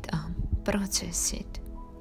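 Soft, near-whispered speech giving guided relaxation instruction, over gentle ambient music with sustained tones.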